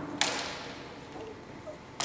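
A sharp strike as a training sword connects during a sparring exchange, about a quarter second in, with a short decaying tail; another strike begins right at the end.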